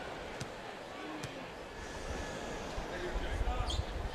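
A basketball bounced on a hardwood court at the free-throw line, with two sharp bounces in the first second and a half. Under it is a steady arena crowd murmur that swells into a low rumble from about halfway.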